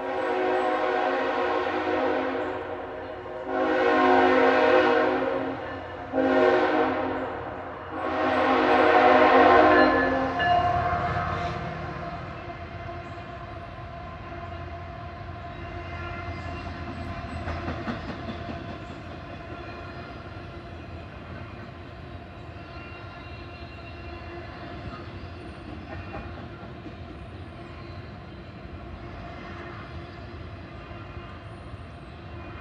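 Locomotive air horn on a CSX ET44AH sounding the grade-crossing signal: a long blast ending about three seconds in, then a long, a short and a final long blast ending about ten seconds in. After that comes the steady rumble of a double-stack intermodal train's well cars rolling over the crossing.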